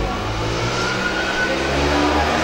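A motor vehicle's engine running, steady and low, rising slightly in pitch midway.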